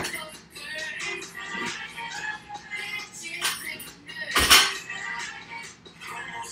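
A loaded 185 lb barbell with bumper plates dropped onto the rubber-matted floor about four and a half seconds in: a single loud thud, with a smaller knock about a second before it. A pop song with singing plays throughout.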